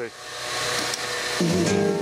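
Music with guitar playing through a Sharp Twincam boombox's speakers. A hiss rises first, then the music cuts in about one and a half seconds in as the audio finally gets through the deck's dirty switches.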